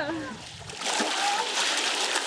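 Water splashing in a muddy ice-water pool, starting about a second in.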